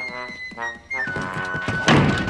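Cartoon underscore music with long held notes, ending with a loud thump near the end as a door slams shut.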